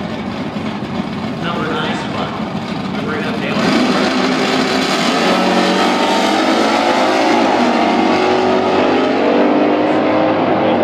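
Two drag-racing cars launching off the start line together and accelerating hard down the strip, their engines getting louder about three and a half seconds in and rising in pitch as they pull away.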